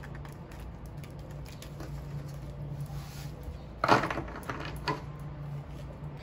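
Tarot cards being handled on a table, with a sharp knock about four seconds in and a smaller one about a second later, over a steady low hum.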